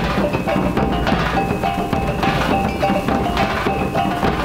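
Minangkabau traditional ensemble playing: talempong gong-chimes beating out a fast, repeating melodic figure over steady drumming.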